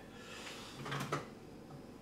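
Faint handling noise in a quiet room, with a short low hum and a single soft click just after a second in.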